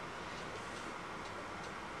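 Quiet room tone: a faint, steady hiss with no distinct events.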